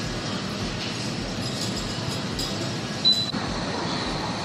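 Steady gym background noise, with a single sharp metallic clink from the cable machine's hardware about three seconds in.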